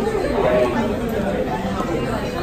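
Background chatter of several voices talking, with no clear words.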